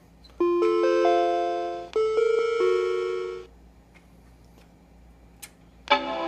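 Macintosh Quadra 650 sounding its Chimes of Death: an arpeggio whose notes enter one after another and hang on, then a second chord that fades out. This is the sign of a failed startup hardware test, which could be explained by the missing ADB keyboard. A sharp click comes about five seconds in, and another chime begins at the very end.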